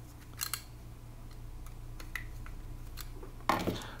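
A small screwdriver turning the set screw in the collar of a cast-iron pillow block bearing, gripping a loose-fitting half-inch electrical conduit shaft, makes faint metal clicks and scrapes. A louder clunk comes about three and a half seconds in.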